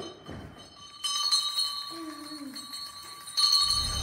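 A small bell ringing inside a cardboard box as the box is moved, starting sharply about a second in and ringing on with clear high tones for a couple of seconds. A low rumble comes in near the end.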